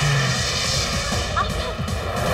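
Film soundtrack of a car accelerating away at speed, its engine mixed under loud, steady background music.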